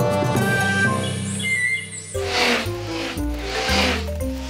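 Cartoon theme music plays for the first two seconds and then ends. After a short dip, low music notes come in with two whooshing swells, about a second apart.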